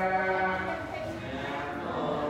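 Buddhist monks chanting together, their voices holding long drawn-out notes, with a change of pitch about a second in.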